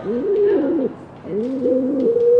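Pigeons cooing: two soft, low, rounded cooing phrases, the second starting a little over a second in.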